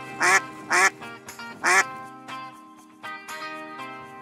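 Background music with three short quacking calls in the first two seconds; the music fades out after that.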